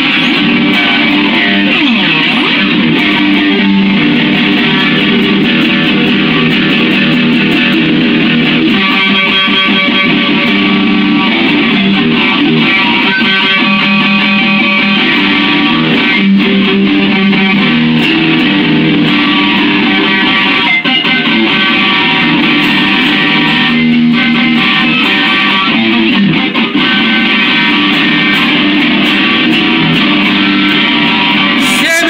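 Stratocaster-style electric guitar strummed loudly and continuously, chords ringing without a break.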